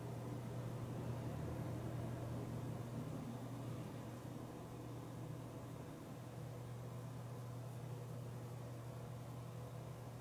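Quiet room tone: a steady low hum with a faint even hiss, and no distinct sounds.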